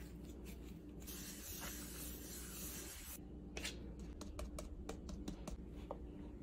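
Hands rolling and shaping a ball of bread dough, the dough and skin rubbing with a soft hiss for a couple of seconds. About halfway through comes a string of light clicks and taps as a metal bench scraper and fingers meet the wooden cutting board.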